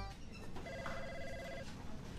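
Music cuts off at the start, then an electronic office telephone rings once, a trilling ring about a second long, over quiet office room tone.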